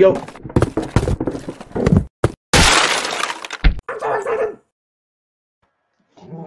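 Sound effects of an animated wooden-crate intro: a quick run of knocks and clicks, then a loud crash of something breaking apart and a heavy thud, followed by a short burst that cuts off suddenly into silence.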